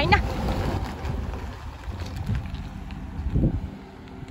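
Full-size SUV driving slowly away across pavement, its engine and tyres a low rumble that fades as it goes, with wind buffeting the microphone.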